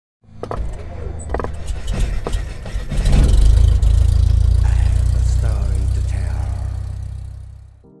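Logo-reveal sound effects: a run of sharp crackling clicks over a low rumble, then a heavy low rumble that swells about three seconds in and slowly fades away, cutting off near the end.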